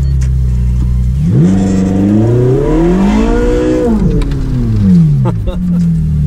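Ferrari 458 Speciale's V8 heard from inside the cabin, its revs climbing smoothly from about a second in, holding briefly, then falling away again before the end.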